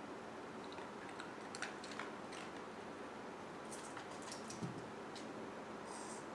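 Faint scattered clicks and taps of a plastic pet toy being handled on a tile floor, with a soft thump about four and a half seconds in, over a steady background hiss.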